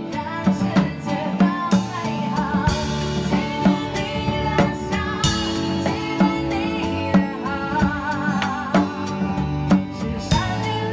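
Live band playing a song: a drum kit keeps a steady beat under bass guitar and a singer's wavering, held melody.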